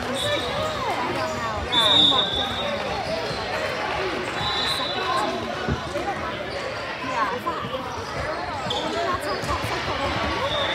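Basketball game in a gym: a ball bouncing on the hardwood court amid players' and spectators' voices, echoing in the large hall, with several brief high-pitched tones.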